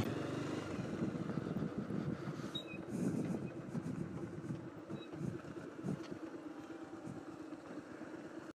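Motorcycle engine running with a steady low hum as the bike rolls slowly, heard faintly.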